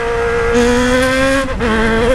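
Yamaha XJ6's 600 cc inline-four engine running very loud through an open 3-inch exhaust pipe with the silencer baffle removed, while the bike is ridden. The revs hold steady and rise slightly, then dip briefly about a second and a half in before picking up again.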